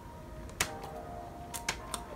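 A few light clicks and taps from handling a packaged cork board frame in its plastic wrap: one clear click about half a second in, two smaller ones near the end. A faint steady hum sits underneath.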